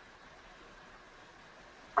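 Near silence: faint steady room tone with a light hiss. A woman's voice starts a word at the very end.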